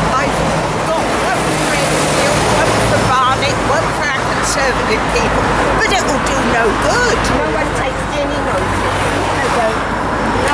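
Indistinct talking from several people over steady road-traffic noise with a low engine hum underneath.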